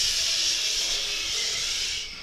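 A steady hiss, strongest in the high range, lasting about two seconds and stopping near the end.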